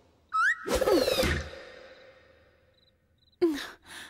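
A woman's exasperated vocal sounds: a loud, drawn-out huff about half a second in that fades away with an echo, then a short sigh with falling pitch near the end.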